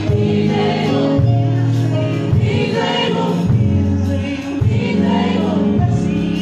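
Live gospel music: a woman singing lead through a microphone with a choir, over keyboard chords and sustained bass notes that change about every second.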